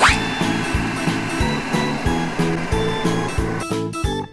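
Children's background music with a steady beat, joined by a quick rising whoosh and then a rushing, hissing cartoon pouring effect that stops shortly before the end.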